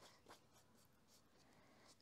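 Near silence, with faint strokes of a paintbrush on watercolour paper.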